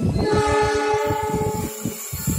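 Horn of an approaching diesel passenger locomotive giving one blast of a little over a second, a chord of several steady tones, over a low rumbling background.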